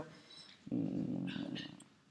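A woman's short, low hesitation hum, an 'mmm' filler of about a second, while she searches for a word.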